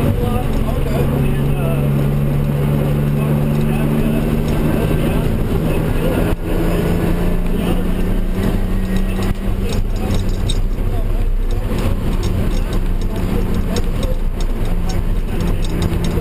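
Turbocharged BMW M3's straight-six engine running hard on track, heard from inside the cabin: a loud, steady drone whose pitch holds and then shifts, with a brief dip in level about six seconds in.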